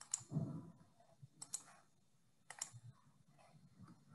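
Faint computer mouse clicks: a single click, then two quick double clicks about a second apart.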